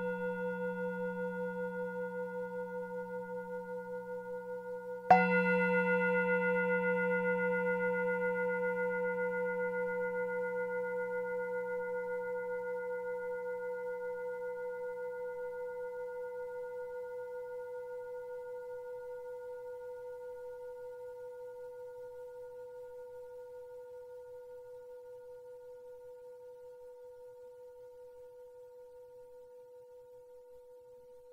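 A struck bell tone, already ringing, is struck again about five seconds in, then rings on with a slow wavering pulse and fades away gradually.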